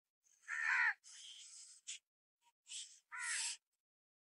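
A bird giving a series of short, harsh calls, the loudest about half a second in and another strong one about three seconds in.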